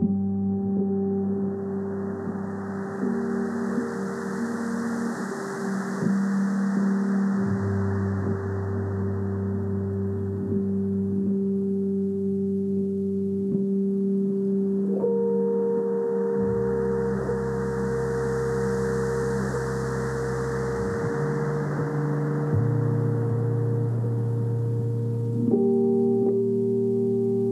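Slow ambient music of long held tones that shift to new notes every few seconds, under a hiss that swells and fades twice like surf.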